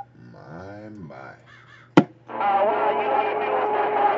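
CB radio on channel 28: a drawn-out vocal call goes out over the air, then a sharp click about halfway as the transmission ends. Another station's voice then comes back over the radio speaker, loud and distorted, with a steady tone running under it.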